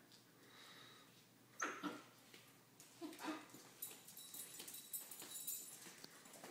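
Border collie puppies tugging on a leash in play: two short, sharp vocal sounds about a second and a half in and another near three seconds, followed by a run of light clicking and scuffling.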